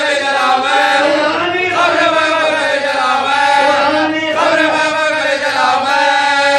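Men chanting a marsiya (a Shia elegy) in a melodic style. The lead reciter sings into a microphone and others join in, the voices gliding between long held notes without a break.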